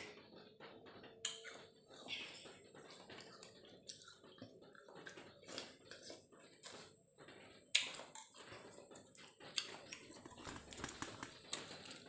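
A person eating es buah (Indonesian iced fruit cocktail): faint slurping and chewing, with a metal spoon clicking sharply against the bowl several times.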